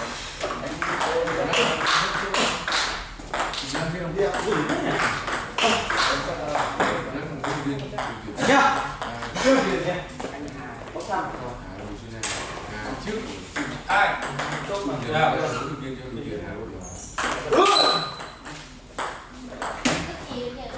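Table tennis ball clicking off rubber-faced paddles and bouncing on the table in quick, irregular taps. People are talking in the background.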